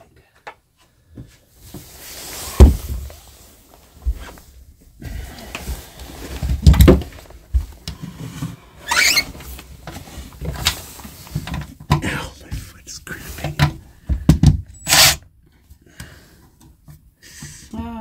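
Scattered knocks and thumps of a plywood drawer, its metal drawer slide and a cordless drill being handled on a wooden floor while the slide is refitted, with a short squeak about nine seconds in.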